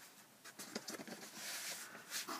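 Faint rustling and light taps as a vinyl LP in its sleeve is slipped back into its cardboard album jacket.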